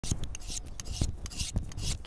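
Skinning knife scraping and slicing along an oryx hide, a quick, irregular run of rasping strokes.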